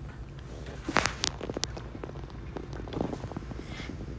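Rustling and a few light clicks from a handheld phone and clothing as the person moves about, over a low steady hum; the clicks come in a small cluster about a second in.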